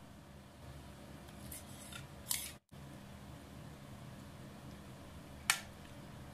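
Faint scraping of a spoon working yogurt out of a glass bowl onto a metal serving dish, with two light, sharp clicks of the spoon against the dishes, one a little past two seconds in and one near the end.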